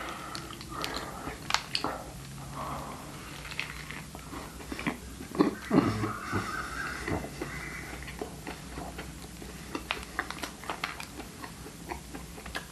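Eating a vegan mushroom burger: chewing and mouth sounds, with scattered small clicks and crinkles as the bun and lettuce are handled.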